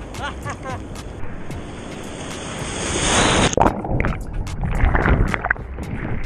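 Ocean wave breaking over a waterproof camera held at the water's surface: the whitewater rush builds for about three seconds, then the sound suddenly turns muffled, with sloshing and knocks, as the wave swamps the camera.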